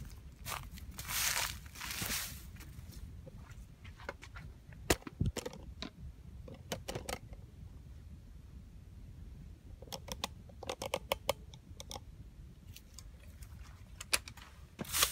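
Rustling and crunching in cut, dry bamboo grass, as from footsteps and handling, with scattered sharp clicks and crackles. A dense run of clicks comes about ten to eleven seconds in.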